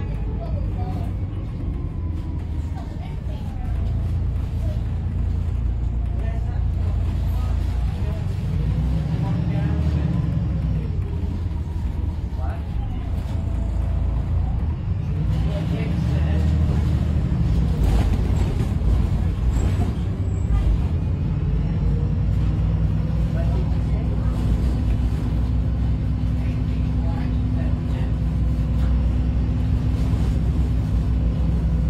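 Inside a moving VDL SB200 Wright Pulsar 2 single-deck bus: steady diesel engine and road rumble, with cabin rattles and knocks around the middle. A steady whine comes in about two-thirds of the way through.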